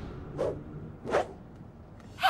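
Two short, quick swishes about three-quarters of a second apart, over a faint quiet background.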